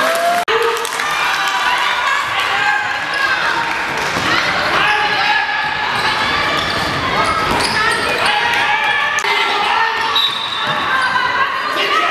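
A handball bouncing on a sports-hall floor during play, with players' voices calling out over it, in the echo of a large hall.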